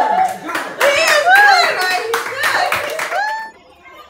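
A group of people clapping amid excited, high-pitched voices, breaking off about three and a half seconds in.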